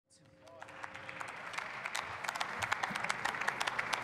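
Applause from members of parliament in the chamber, with individual claps clearly distinct. It fades in over the first second and then holds steady.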